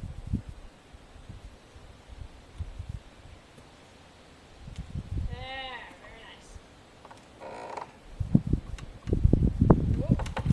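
Wind buffeting the microphone, with a short wavering call about halfway through. Near the end come louder low thumps as the horse steps off.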